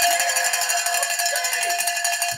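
A long-handled Mississippi State cowbell being shaken hard, clanging rapidly and continuously with a bright metallic ring.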